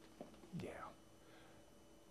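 Near silence, broken by a faint click and then a brief, faint whisper-like breath or murmur about half a second in.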